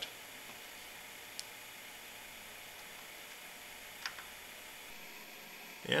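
Quiet steady hiss of room tone with two faint small ticks, one about a second and a half in and one about four seconds in, while a wire is being soldered onto a circuit board.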